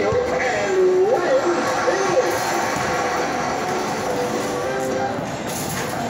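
Arcade din: game-machine music and electronic tones over a background hubbub of voices.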